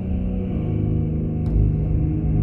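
Background film score: a low, sustained drone holding steady pitched notes over a deep rumble, with a faint tick about one and a half seconds in.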